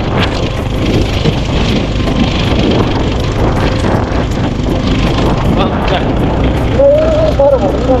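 Motorcycle running over a rough gravel track: steady low engine and road noise with frequent short rattles and knocks from the bumps. A voice comes in near the end.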